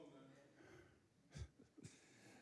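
Near silence: faint room tone, broken by two brief soft sounds about one and a half seconds in and just before the end.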